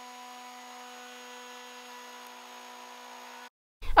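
Triton plunge router's motor running at a steady speed with a flush-trim bit: a faint, even whine with no variation, cutting off abruptly near the end.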